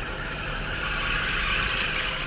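Steady noise inside a car: a low rumble under an airy hiss that swells a little about a second in.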